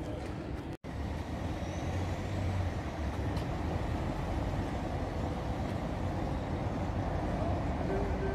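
Street ambience dominated by a motor vehicle's engine running nearby as a steady low rumble, with general traffic noise around it. The sound cuts out completely for an instant about a second in.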